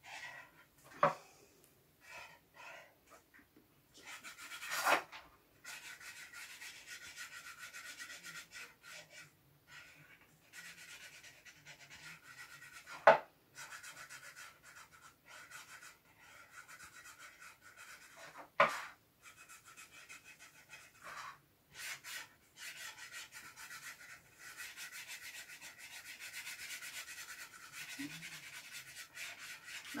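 A pen drawing on cardboard: scratchy rubbing strokes in stretches with short pauses, and four sharp knocks along the way.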